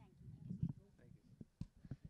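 Faint voices of a press crowd, with a few sharp knocks from the reporters' handheld microphones being handled and pulled away.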